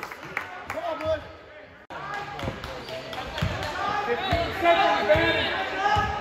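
Basketball dribbled on a hardwood gym floor, low bounces about a second apart, with several voices calling out over them. The sound breaks off briefly about two seconds in.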